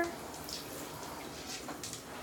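Handheld shower head spraying a steady stream of water into a bathtub.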